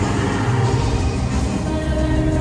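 Live pop music playing loudly over a stadium sound system, recorded on a phone from within the concert crowd, with heavy bass.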